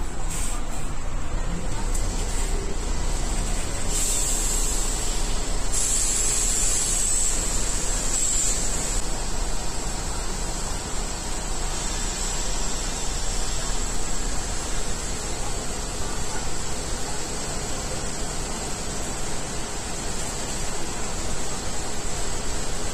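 City bus idling at the stop close by: a steady engine rumble with a high whine over it. About four and six seconds in come short bursts of air hiss.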